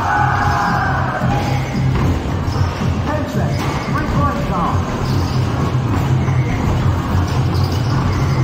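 Basketballs thudding against arcade hoop backboards and rims and landing on the machine's return ramps, repeated irregular knocks, over steady background music and voices.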